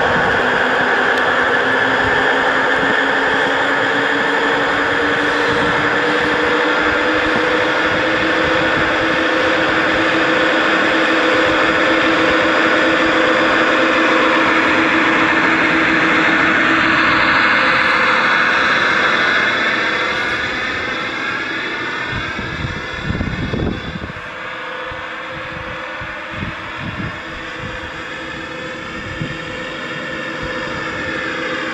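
Gauge 1 model Class 66 diesel locomotive under radio control, its sound system giving a steady diesel engine drone as it pushes a snow plough through drifts. The drone rises slightly in pitch over the first few seconds and grows quieter after about twenty seconds, with a few low thumps near the end.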